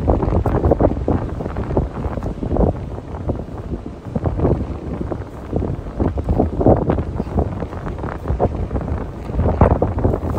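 Wind buffeting the microphone in uneven gusts, with a heavy low rumble.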